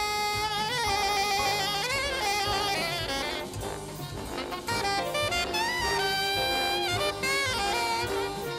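Alto saxophone playing a jazz solo over a big band's rhythm section and brass. It wavers through notes in the first few seconds, then holds longer notes.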